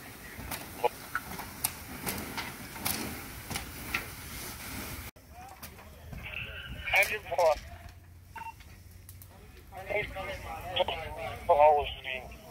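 Fire hose stream spraying into a burning shed: a steady hiss with scattered crackling clicks. It cuts off abruptly about five seconds in, and men's voices follow.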